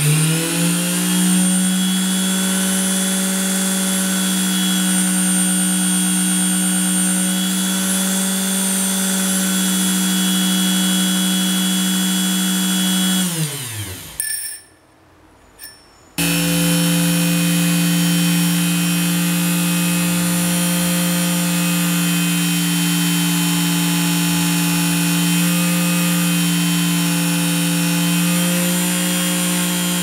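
Small electric rotary tool's motor spinning an aluminum disc: it spins up with a rising whine, then runs at a steady pitch. About 13 seconds in it winds down with a falling pitch and goes quiet. From about 16 seconds on it is running steadily again.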